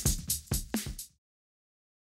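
Electronic drum-machine beat closing the toy hen's parody song, about four hits a second, cutting off suddenly about a second in.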